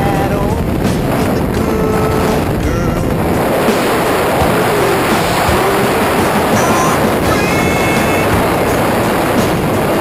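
Steady, loud rush of freefall wind buffeting the microphone during a tandem skydive.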